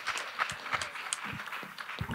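Audience applauding: many hands clapping in a dense patter.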